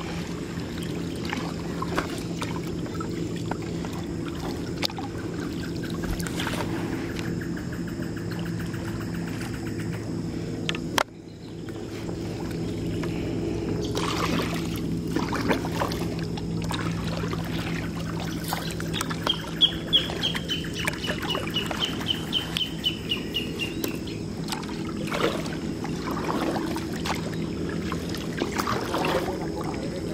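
Kayak paddling: the paddle dipping and knocking, water splashing and dripping off the blades, over a steady low hum. Partway through, a bird calls in a rapid trill for several seconds.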